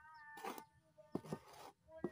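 A small hand trowel scraping and scooping loose potting soil on a wooden board, several short scrapes with the loudest just after a second in. A faint held tone sounds behind them.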